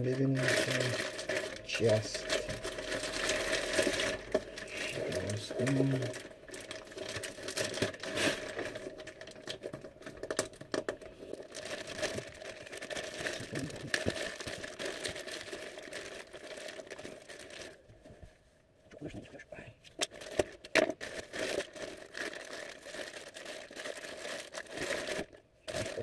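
A plastic mailer bag crinkling and rustling in irregular crackles as hands pick at it and tear it open. A steady faint hum runs underneath.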